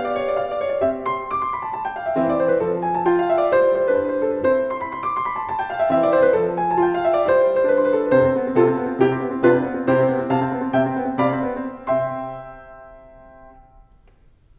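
Steinway Model M grand piano played in a classical passage of quick running notes over a repeated bass figure, ending on a chord about twelve seconds in that rings and fades away.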